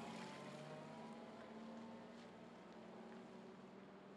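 Nissan Patrol G60's engine running as the vehicle moves away, fading steadily with a slight drop in pitch in the first second.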